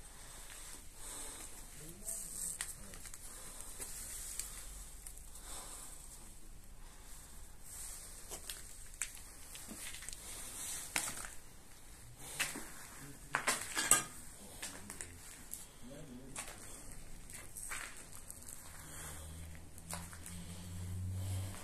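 Footsteps crunching and scuffing over rubble and debris on a broken tiled floor, with scattered small clinks and crackles. There are a few louder crunches about two-thirds of the way through.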